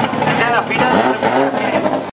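Indistinct talking voices over the steady running of car engines.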